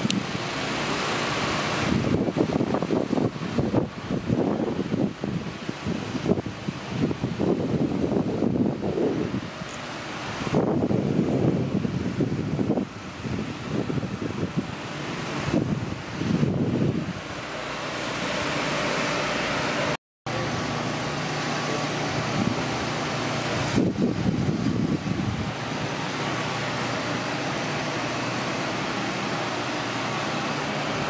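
Wind buffeting a handheld camera's microphone outdoors, gusting unevenly for the first two-thirds and steadier after a cut.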